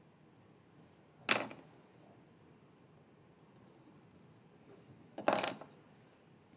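Two short, sharp knocks about four seconds apart against quiet room tone, the second slightly longer with a small click just before it.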